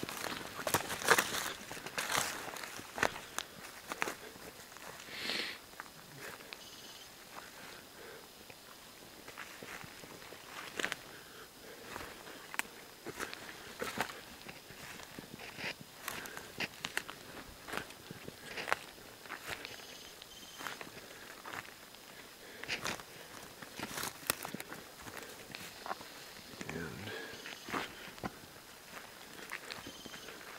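Footsteps pushing through dense forest undergrowth, with irregular cracks of twigs and dry sticks snapping and leaf litter crunching underfoot.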